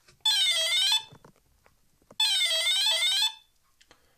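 ENERG Pro 40A brushless ESC sounding its programming-mode tones through the motor: two short beeping tunes, each about a second long, about two seconds apart. The tones signal the menu item now on offer, Soft Acceleration Startup.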